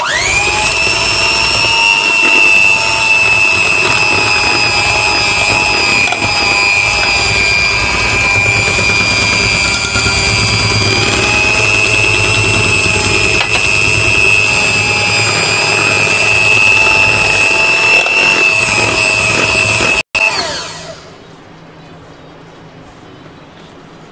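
Philips electric hand mixer running with its beaters in thick muffin batter while milk is poured in. The motor starts abruptly, holds a steady high whine, and spins down near the end.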